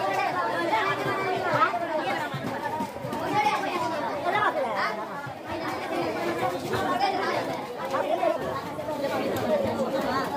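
Several people talking over each other in steady, unintelligible chatter.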